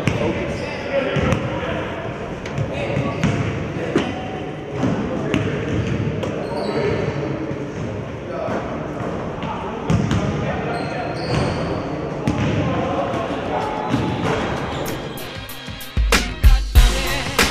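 Basketballs bouncing on a hardwood gym court, single thuds at irregular intervals about a second apart, under steady background chatter in a large gymnasium.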